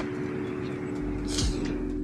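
Street traffic noise as an SUV pulls into a roadside parking space, under soft background music with steady held notes. A brief hiss about one and a half seconds in.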